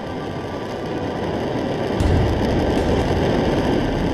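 Rocket engine sound effect: a rumbling roar that builds up, with a sudden deep boom about halfway through as the spacecraft's stage separates and its fairing panels break away.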